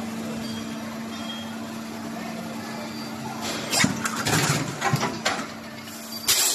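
PET preform injection molding machine running with a steady hum; about three and a half seconds in, as the 12-cavity mold opens, a burst of sharp clattering as the molded preforms come off the cores.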